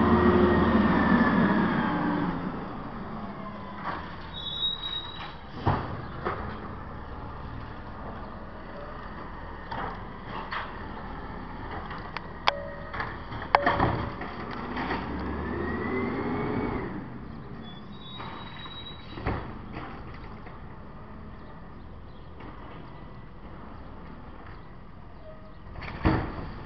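Automated side-loader garbage truck at work: the engine running under a whine that rises and falls twice, loudest at the start, with scattered clanks and knocks and two brief high squeals.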